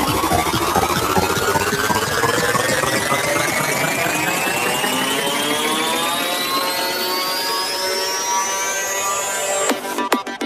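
Electronic dance music build-up: a synth riser climbs steadily in pitch over the track while the bass thins out. Just before the end it breaks into the drop, with hard, evenly spaced beats.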